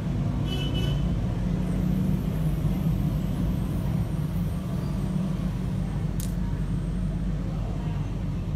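A steady low background rumble, with a brief high squeal about half a second in and a short sharp click about six seconds in.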